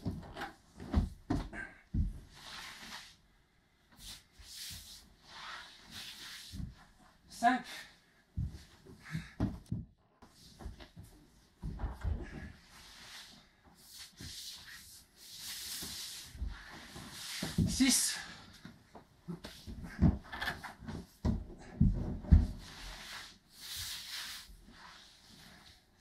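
Repeated dull thuds and cloth rustling as a judoka in a cotton judogi throws his legs over and rolls on a bare wooden floor, with hard breathing between the moves.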